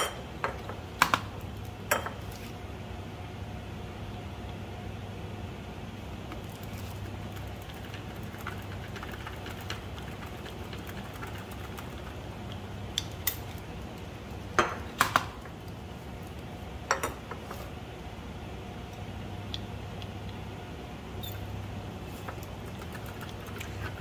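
Hand pipetting with a micropipette: a few sharp plastic clicks and light clinks as tips are pushed on and samples are handled, spread out with long gaps, over a steady low hum.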